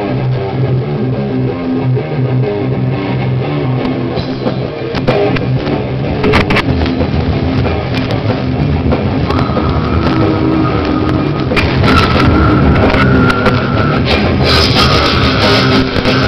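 Grindcore band playing loud in a small room: distorted electric guitar, bass and drum kit, with screamed vocals into a microphone in the second half. The sound grows louder and harsher near the end.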